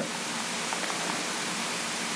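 A steady, even hiss with nothing else in it: the background noise of the recording.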